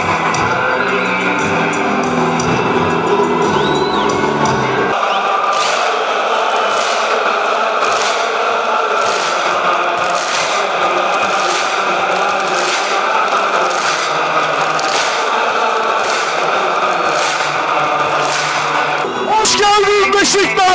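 Large football stadium crowd singing a chant together, with backing music for the first five seconds or so. After that the crowd keeps time with sharp, regular beats, about three every two seconds.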